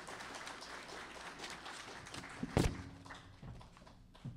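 Audience applauding, a dense patter of claps that thins out near the end, with one loud thump close to the microphone about two and a half seconds in.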